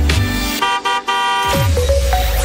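Radio station jingle for the traffic report: produced music with a car-horn honk in the middle and low, falling bass sweeps.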